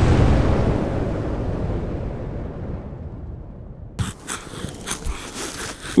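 A deep cinematic boom sound effect, struck just before and dying away slowly over about four seconds. About four seconds in it cuts to a knife blade scraping curls off a frozen wooden stick in a few short strokes.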